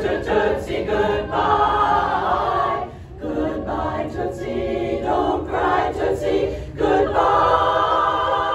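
Women's barbershop chorus singing a cappella in close harmony, moving into a long, loud held chord about seven seconds in.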